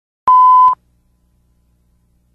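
A single electronic beep: one steady tone lasting about half a second, starting and stopping abruptly.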